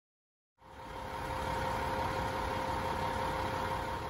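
Silent for the first half second, then a fire engine's diesel engine running steadily at the scene, a low rumble with a steady hum held over it.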